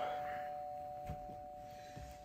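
Two-tone doorbell chime ringing on and slowly fading away, with a faint knock about a second in.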